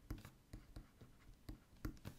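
Faint ticks and scratches of a stylus on a graphics tablet as a word is handwritten: about five soft, short clicks spread through the two seconds.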